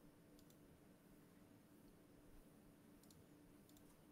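Near silence: faint room tone with a few faint clicks, one about half a second in and a cluster around three seconds in.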